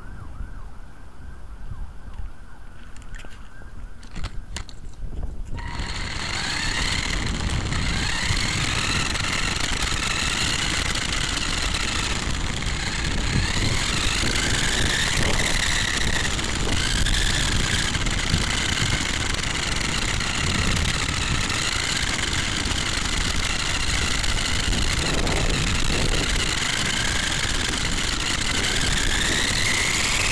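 Whine of the Mini Rock Climber RC crawler's small electric drive motor and gears, rising and falling in pitch with the throttle as it drives, over a low rumble of tyres and wind on tarmac. The whine starts about six seconds in, after a quieter stretch of low rumble.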